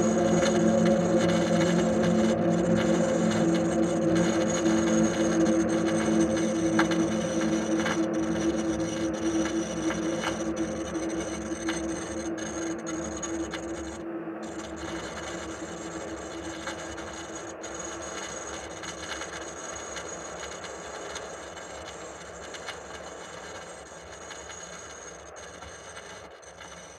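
Ambient ending of an electronic pop song: sustained low drone tones over a hissing, crackling noise bed, slowly fading out. The drone dies away about two-thirds of the way through, leaving the fading noise.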